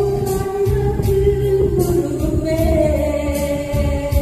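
A woman singing a Korean trot song into a microphone over instrumental accompaniment with a bass line and drums, holding long notes and stepping up in pitch about halfway through.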